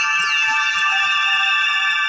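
Electronic title-sequence jingle: several steady high synthesizer tones held together, with quick pitch sweeps rising and falling in the first second.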